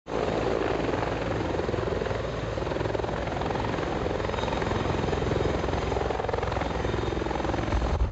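Military utility helicopter with a two-bladed main rotor hovering low, its turbine and rotor running steadily with a fast, even rotor beat.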